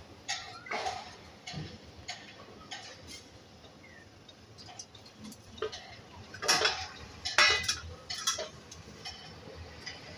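Steel kitchen utensils being handled: light clinks, taps and knocks of a steel plate, spoon and bowls, with two louder clatters a little past the middle.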